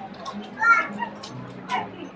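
Background music with steady low notes under a hubbub of voices, with two short high-pitched calls like children's shouts, the first and loudest a little before the middle and the second near the end.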